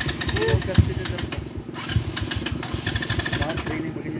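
Rusi trail motorcycle engine straining up a steep dirt climb, revving hard in two bursts, the second longer and lasting about a second and a half.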